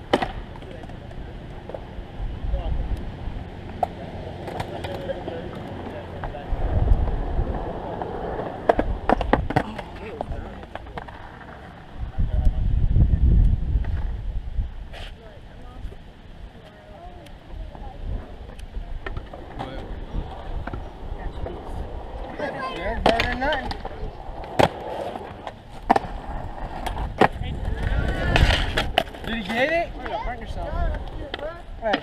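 Skateboard wheels rolling over concrete in several passes, with sharp clacks of boards hitting the ground scattered through.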